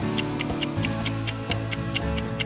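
Clock-style ticking of a quiz countdown timer, about four ticks a second, over background music with low sustained notes.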